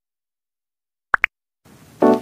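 Two quick rising 'plop' pop sound effects about a tenth of a second apart, a cartoon-style button click, coming a little over a second in after silence.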